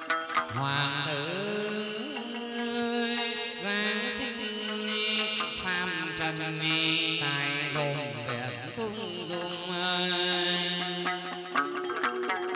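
Vietnamese chầu văn ritual music: plucked đàn nguyệt (moon lute) and a bamboo flute playing together, with long held notes that slide up and down in pitch.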